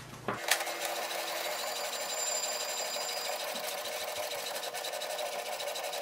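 HP Smart Tank 5107 all-in-one inkjet printer running a copy job, starting with a click about half a second in. The print mechanism then whirs steadily with a fast, even rattle as it feeds and prints the page.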